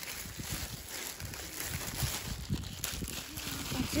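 A thin plastic carrier bag rustling and crinkling, along with dry leafy chickpea stems brushing against it, as a bunch of fresh green chickpea plants is pulled up out of the bag.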